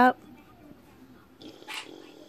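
A pet pig lying in bed gives a short, soft noisy snort-like sound through its nose about a second and a half in.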